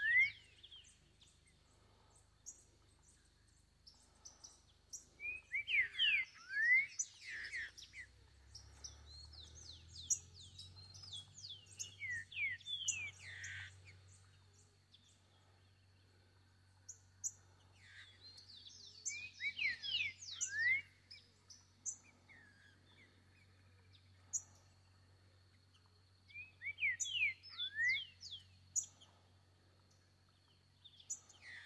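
Green-winged saltator (trinca-ferro) singing loud phrases of clear, quick whistled notes. Five phrases come several seconds apart, each lasting a few seconds.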